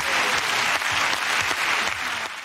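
Studio audience applauding: a dense, steady clatter of many hands clapping.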